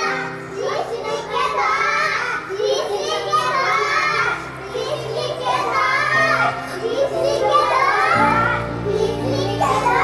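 Young girls' voices calling and chanting in play, in repeated sing-song phrases, over background music with a steady low drone that grows stronger about eight seconds in.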